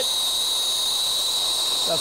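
Brazing torch flame from a Harris Inferno tip hissing steadily, with a thin high tone in the hiss, as it heats a steel joint to lay a bronze fillet.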